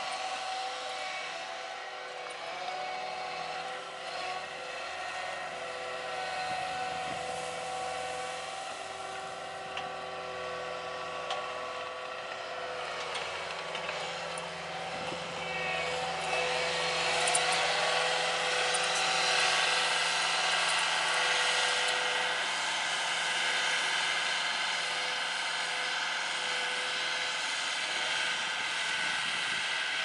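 Caterpillar compact track loader running while it works topsoil, its engine and hydraulics a steady pitched drone that grows louder and rougher about halfway through.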